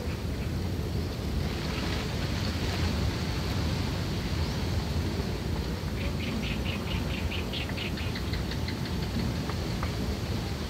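Steady low background rumble. About six seconds in comes a quick run of faint high ticks, about five a second, for roughly two and a half seconds.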